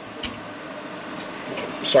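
Electric fans running with a steady, even hiss, and a faint click about a quarter of a second in.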